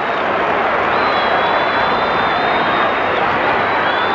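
Football crowd roaring and cheering in the stands, a steady wash of noise without a break.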